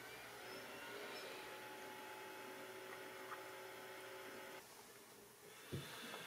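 Faint steady hum of a desktop PC's optical disc drive spinning while files copy off the disc, stopping abruptly about four and a half seconds in.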